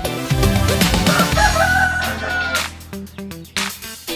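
A rooster crowing once, a long call of about a second and a half, over background music with a steady beat.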